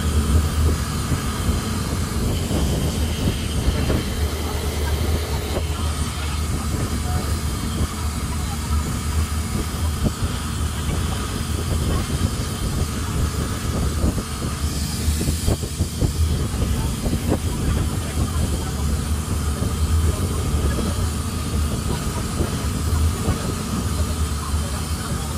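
Long-tail boat's engine running steadily at cruising speed, a constant low drone, with wind and water rushing past the microphone.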